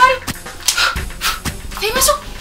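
A person whimpering: a short rising whine at the start and another near the end, with breathy puffs between.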